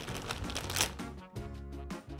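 A plastic bag of candy melts crinkling and rustling as it is opened by hand, mostly in the first second, over background music that carries on to the end.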